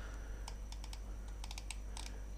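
Light clicking of computer keyboard keys, a few single taps and a quick run of them, over a faint steady low hum.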